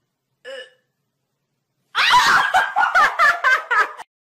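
A woman laughing: a short vocal sound near the start, then from about two seconds in a loud, rapid string of laughs, several pulses a second, cut off at the end.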